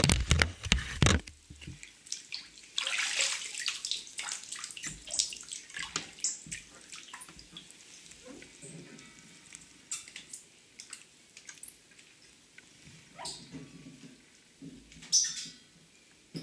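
Bathwater sloshing and splashing around a person's legs as they step and stand in a partly filled bathtub. A quick run of heavy thumps comes in the first two seconds, then a longer splash, then scattered small splashes and drips, with a louder splash near the end.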